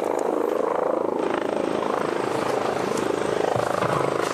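Steady beating of a helicopter's rotor, a rapid even chop with no change in level.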